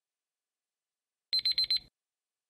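Countdown-timer alarm sounding as time runs out: a quick run of four high electronic beeps, like a digital alarm clock, about a second and a half in.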